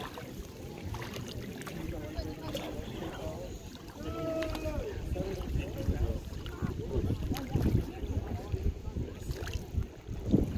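Wind rumbling on the microphone, with short bursts of people talking in the background, clearest about halfway through.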